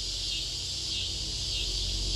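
Background score holding a low sustained drone under a steady, high, fine chirring hiss, like a night-insect bed. It is unchanging throughout, with no beat.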